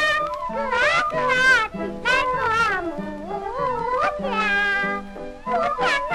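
An early Chinese popular song played from a recording: a high singing voice sliding and wavering between notes over low, steady accompanying notes.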